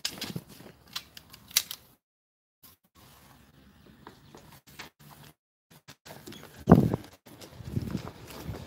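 Arrows being pulled out of a foam archery target and handled, with a few sharp clicks of the shafts in the first two seconds; the sound drops out completely twice. A loud bump and rustle about seven seconds in as the phone recording it is picked up and handled.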